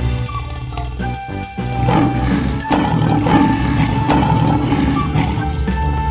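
Background music with a lion roaring layered over it, the roaring starting about two seconds in and dying away near the end.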